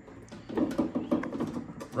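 Handling noise of an aftermarket wiper filler panel being hooked over the cowl lip and pressed into place: a quick run of light clicks and knocks starting about half a second in.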